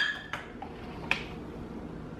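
Quiet room hiss with two small clicks, about a third of a second and about a second in, from kitchen items being handled on a counter.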